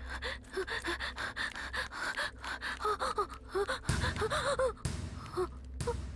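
A woman gasping for breath in short, repeated gasps, with a low rumble swelling briefly about four seconds in.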